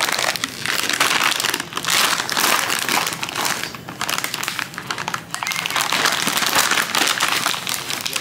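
Shiny holographic gift-wrapping paper being torn and crumpled by hand, a continuous crinkling and ripping.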